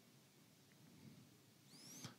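Near silence: faint room tone, with a brief faint rising squeak near the end.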